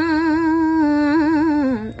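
A woman's voice chanting Khmer smot, unaccompanied Buddhist chanted poetry. She holds one long note, ornaments it with a wavering pitch, then slides down near the end.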